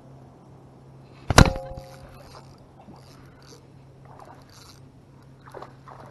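Small electric trolling motor running with a steady low hum, broken about a second and a half in by one loud, sharp knock that rings briefly.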